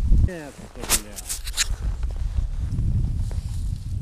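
Wind rumbling on the microphone, with a brief voice near the start and a quick run of four or five sharp rustles or clicks about a second in.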